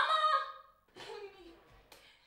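A woman's loud scream, rising in pitch, at the very start and lasting about half a second, followed by fainter vocal sounds. A sharp click near the end, a light switch being flipped.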